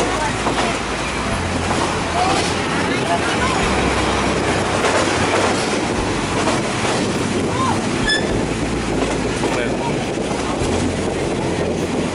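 Steady running noise of a passenger train heard from an open carriage window: wheels on the rails and rushing air over a low drone. A brief high chirp sounds about eight seconds in.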